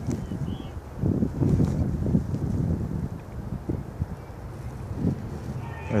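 Wind buffeting the microphone, an uneven low rumble, with a few faint knocks and rustles as the phone brushes the jacket fabric.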